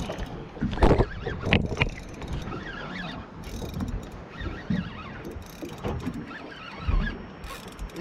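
Spinning reel being wound under load as a fish is fought on the rod, a mechanical winding and clicking, with a few sharp knocks about a second in.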